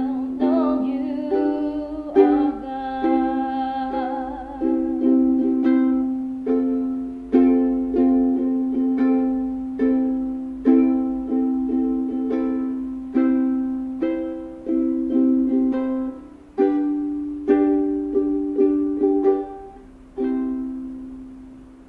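A ukulele strummed in slow chords, with a woman singing a gentle worship song over it for the first few seconds. Then the voice stops and the ukulele plays on alone, each chord struck and left to ring and fade.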